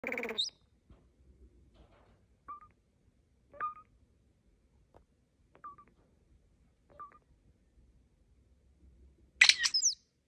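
European starling calling: a short call at the start, then a string of brief chirps spaced a second or two apart. Near the end comes a louder burst of high whistles and rasps.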